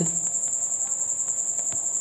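Insect trilling: one continuous high-pitched tone that pulses rapidly and evenly.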